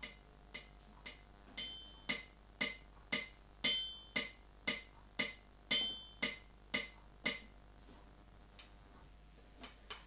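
Yamaha PSR-270 keyboard's built-in metronome clicking steadily at about two beats a second, with a brighter, higher accent click on every fourth beat. The clicks stop about seven seconds in, leaving only a couple of faint clicks near the end.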